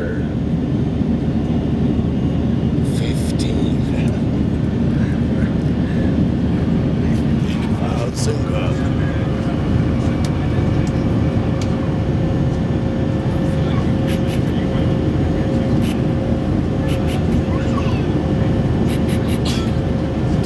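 Steady in-flight cabin noise of a jet airliner: a continuous low rumble of engines and airflow with a faint steady hum tone, and a few light clicks.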